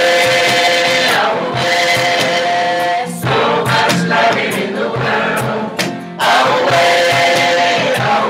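Live song: a man strumming an acoustic guitar and singing, with a woman singing alongside him. Their voices hold long notes, with short breaks between sung lines about three seconds in and again about six seconds in.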